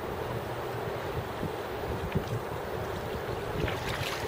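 Steady rush of fast-flowing river water with wind buffeting the microphone, and a few faint short ticks over it.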